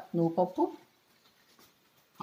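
A woman speaking for about half a second, then near silence with only faint room tone.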